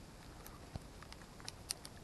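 A few faint, sharp ticks scattered over a quiet outdoor background.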